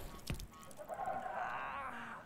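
A brief click, then a high-pitched, wavering vocal sound without words lasting a little over a second, from a cartoon character in the animated short's soundtrack.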